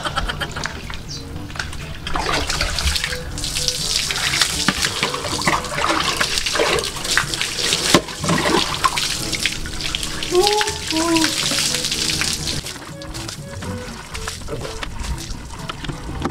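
Water from a hand water pump splashing and pouring onto concrete as a man washes under it, easing off a couple of seconds before the end, with background music playing.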